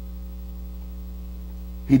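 Steady low electrical hum in the recording, unchanging, with a man's voice starting right at the end.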